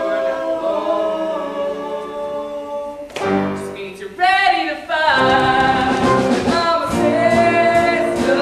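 Live stage cast singing a held chord without accompaniment. About three seconds in there is a sudden loud entry, then a solo voice with a wavering pitch. From about five seconds the band plays under the group singing.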